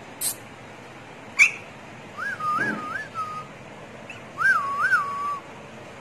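A person whistling two short warbling calls, each rising and falling in pitch a few times; the second comes in the last second or so. Two brief sharp sounds come before the whistles, in the first second and a half.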